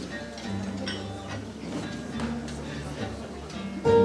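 Instrumental intro on acoustic guitars with double bass: soft plucked guitar notes over held low bass notes, the guitars coming in louder near the end.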